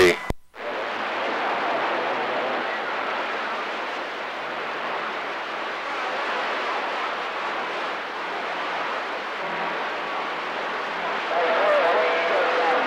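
CB radio receiver hiss: steady open-channel static from the speaker after a click as the transmission ends, with faint tones coming through near the end.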